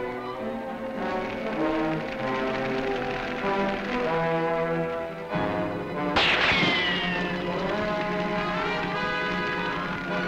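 Dramatic orchestral film-serial score with brass, held notes shifting in pitch. About six seconds in, a sudden loud burst cuts across the music, followed by a falling high glide for about a second.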